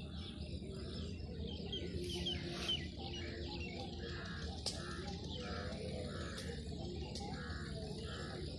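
Birds calling, one giving a short call repeated at a steady pace over a low steady rumble.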